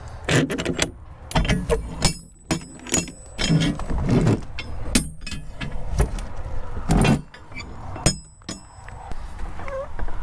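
Metal clanks, clicks and scrapes of a refrigerated shipping container's door lock handles and lock rods being worked open, irregular throughout, with the heaviest clunk about seven seconds in.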